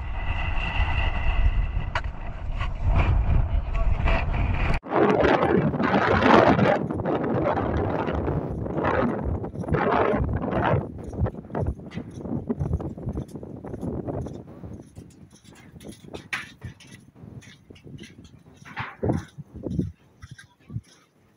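Wind rumbling on the microphone during the first five seconds. After an abrupt break, indistinct background voices and scattered footsteps take over, thinning out toward the end.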